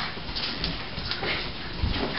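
A dog's sounds against a noisy background, with a couple of low knocks near the end.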